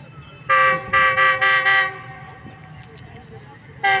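Horn of an approaching Pakistan Railways GEU-20 diesel-electric locomotive, a chord of several tones: a short toot about half a second in, then a longer blast broken into several quick toots, and one more short toot near the end.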